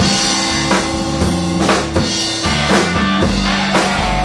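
Live blues-rock band playing an instrumental passage on electric guitar, electric bass and drum kit, with the drums to the fore and hitting a steady beat.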